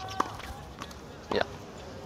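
A tennis ball struck with a racket: one sharp pop about a fifth of a second in, followed by a brief spoken "yeah".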